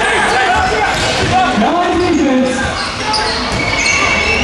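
A basketball dribbled on a hardwood gym floor during a game, with players' and spectators' voices calling in a large echoing hall.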